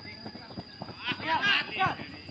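A raised voice shouting on the football pitch, loudest in the second half, over a light patter of players' running footsteps on hard dry ground.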